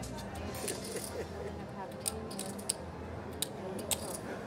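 Casino poker chips clicking against each other in a few separate sharp clicks as a player handles his stack, over a low murmur of voices.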